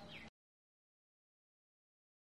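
Near silence: a faint trailing sound cuts off abruptly a fraction of a second in, followed by complete digital silence.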